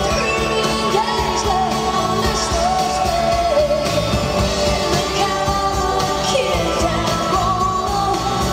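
Live pop-rock band with a female lead vocalist singing a wavering melody over steady electric guitar, bass and drums, heard from the audience in a large arena.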